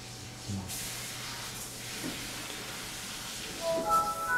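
A steady hiss, then near the end the Windows 7 startup sound begins through small desktop speakers: clear chiming notes as the PC finishes logging on to the desktop.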